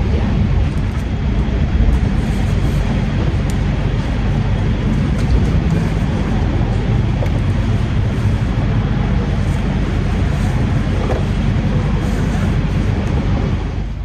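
Steady outdoor background noise: a loud low rumble under a fainter hiss that runs on evenly, with no distinct knocks or voices. It stops abruptly at a cut near the end.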